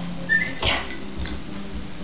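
A dog gives one brief, high whimper, followed by a short noisy rustle.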